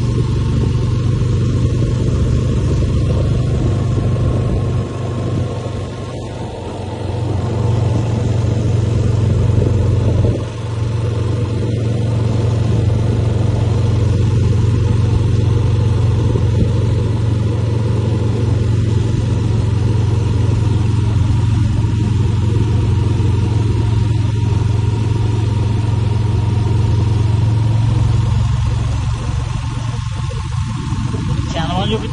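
Motor vehicle under way at a steady pace: a constant low engine drone with road and wind noise, dipping briefly about five and ten seconds in.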